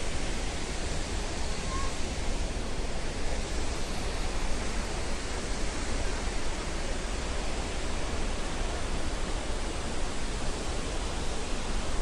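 Steady rushing of a tall waterfall falling into its plunge pool, an even noise with no breaks.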